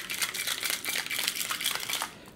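Metal cocktail shaker being shaken hard, the ice inside rattling in a rapid, even run of clicks that stops at the end.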